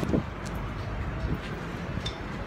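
Outdoor city street ambience: a steady low rumble of traffic with wind noise on the phone's microphone.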